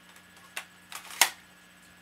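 Sharp plastic clicks from the magazine of a plastic spring airsoft machine pistol as it is released and pulled from the grip. There are three clicks in about a second; the last is the loudest.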